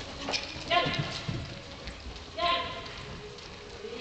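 A horse's hooves thudding on soft arena footing as it canters loose around the school. A person's voice gives two short, high calls to urge it on, about a second in and again about two and a half seconds in.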